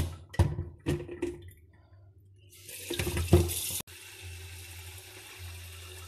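A few sharp metal clanks as a stainless electric kettle is handled in a stainless steel sink, then tap water running steadily into the kettle for the second half.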